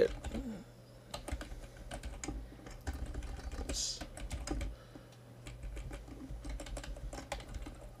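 Typing on a computer keyboard: a run of irregular key clicks as code is entered.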